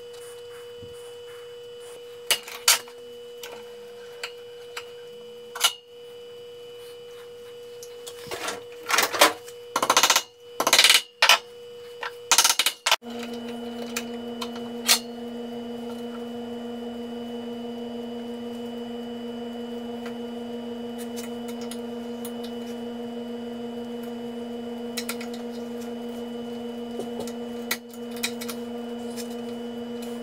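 Clicks, taps and clatter of stiff stainless steel wire and a small metal bending tool being handled and worked at a steel bench vise, loudest in a run of rattling about 8 to 13 seconds in. A steady hum lies underneath and turns lower and louder about 13 seconds in.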